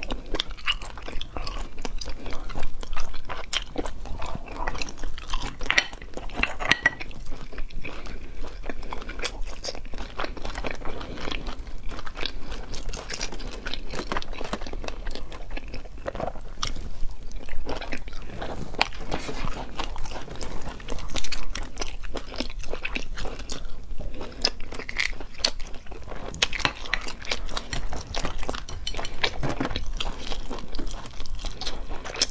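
Close-miked chewing and crunching of cooked cat's eye sea snails, with many sharp clicks throughout as the shells are handled and the meat is bitten.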